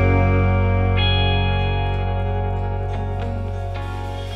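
Instrumental ending of a song: electric guitar with effects holding sustained chords, a new chord coming in about a second in, the whole mix getting steadily quieter as the song fades out.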